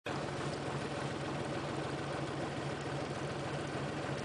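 An engine idling steadily, a low even hum over a haze of noise.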